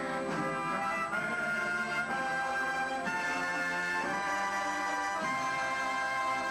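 Military concert band of brass and woodwinds playing held chords together. The chords move to a new harmony about once a second.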